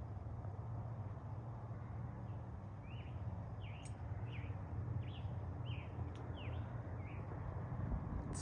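A songbird giving a series of about nine short chirps, each a quick sweep in pitch, starting about two seconds in, over a steady low rumble.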